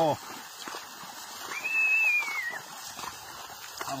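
A person whistling one high note, about a second long, near the middle; the pitch rises and then falls. It is a herder's whistle to cattle being driven.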